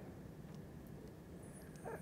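Quiet room tone in a pause between spoken phrases, with no distinct event.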